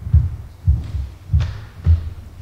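A person's footsteps: four low, heavy thuds about half a second apart, at a walking pace.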